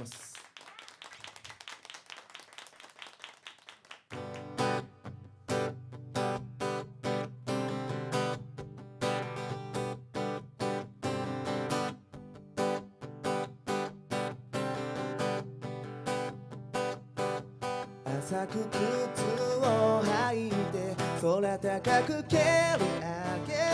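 Solo acoustic guitar playing a song intro, a steady rhythmic pattern of picked and strummed chords starting about four seconds in after a quiet opening. A male voice starts singing near the end.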